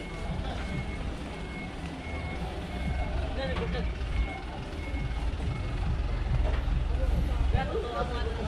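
Truck reversing alarm sounding a steady series of short, high beeps at one pitch over the low running of a truck's diesel engine, which grows louder in the second half as the blue water tanker truck manoeuvres.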